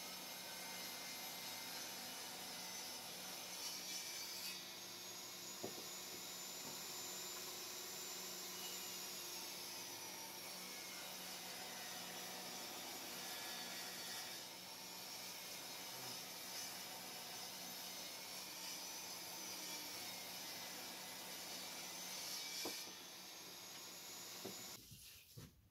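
Ridgid table saw running steadily while ripping a wooden board along the fence, with a higher whine as the blade cuts from about four seconds in until near the end.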